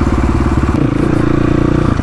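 A 450cc single-cylinder four-stroke dirt bike engine running under the rider at low street speed, a steady rapid firing note that changes tone partway through as the throttle shifts.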